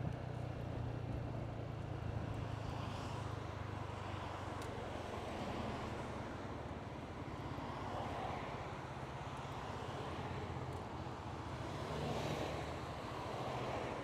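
Motor scooter riding at town speed, heard from the handlebar camera: a steady low engine hum under road and wind noise. The engine note drops away after a few seconds and comes back near the end as the scooter closes up behind traffic.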